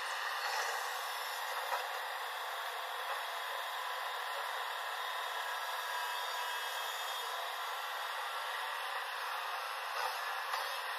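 JCB tracked excavator running steadily as it swings and digs, its engine and hydraulics making an even noise, with a small tick about two seconds in.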